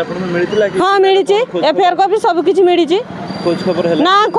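A woman speaking emphatically in Odia, with a brief pause near the start and another about three seconds in, and a steady low hum showing in the gaps.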